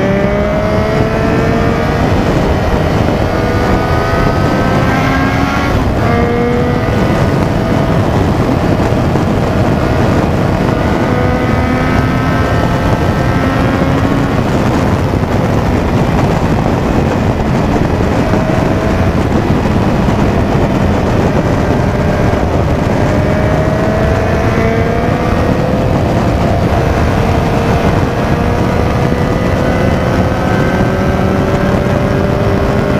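Sport motorcycle engine pulling hard at highway speed, its pitch climbing slowly as the bike accelerates, with a quick gear change about six seconds in. Heavy wind noise on the microphone runs underneath.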